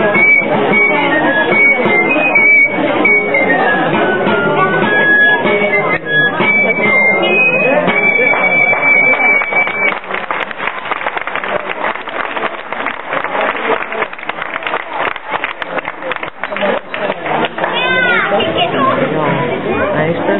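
A folk dance tune played on a reed or wind instrument, a clear melody for about the first ten seconds. After that the tune gives way to a dense run of tapping and clatter, with voices from the crowd.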